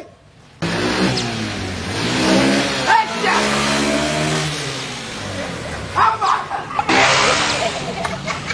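Small motorcycle engine revving as it rides close past, its pitch rising, holding, then dropping away after about five seconds. Near the end comes a short burst of hiss.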